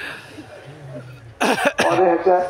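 A man coughing twice near the end, two short loud coughs in quick succession after a quieter pause.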